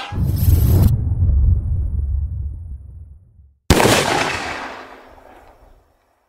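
Two edited-in gunfire sound effects, each a sudden loud bang followed by a low rumbling fade lasting about two seconds. The first opens with nearly a second of dense crackle, and the second comes a little past halfway.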